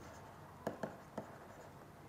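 Faint stylus strokes on a tablet as a word is handwritten, with three light taps in the middle.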